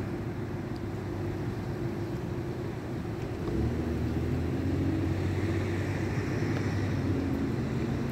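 Car engine idling, a steady low hum heard from inside the cabin, getting a little louder about three and a half seconds in.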